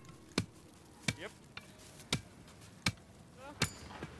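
Five sharp knocks, spaced about three quarters of a second apart: hammering at a thatching site where reed is going onto a roof.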